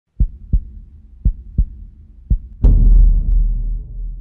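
Low thumps paired like a heartbeat, about one pair a second. The third pair ends in a much louder deep boom that rumbles and slowly fades.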